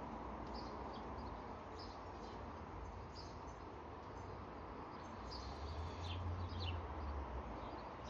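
Quiet background ambience with faint, brief high chirps scattered through it, and a low rumble that swells about five seconds in and fades near the end.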